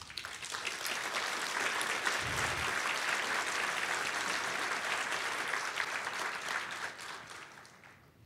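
A large audience applauding in a hall, building up within the first second, holding steady, then dying away near the end.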